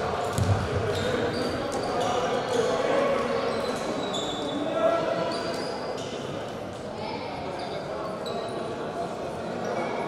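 Many voices talking and calling in a reverberant sports hall, with a basketball bounce about half a second in and short squeaks of sneakers on the hardwood floor.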